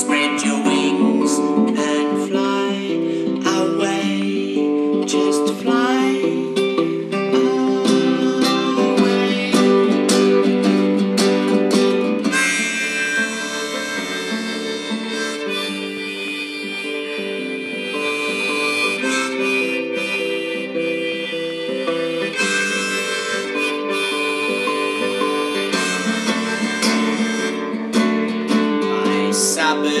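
Harmonica played over a nylon-string classical guitar in an instrumental break of a folk song. About twelve seconds in, the harmonica moves from short chordal phrases to longer held notes.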